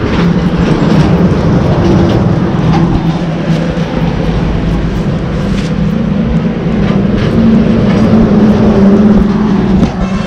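Diesel farm tractor engine running steadily at idle close by, a loud low hum that rises slightly in pitch near the end.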